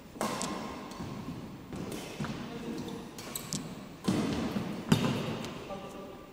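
Badminton rally on a wooden indoor court: a series of sharp racket hits on the shuttlecock and players' footwork, irregularly spaced. The loudest hit comes about five seconds in.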